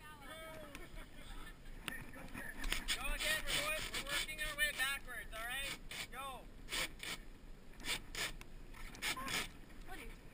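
Indistinct talk from nearby people, heard in several short stretches, with a few sharp clicks or knocks in between.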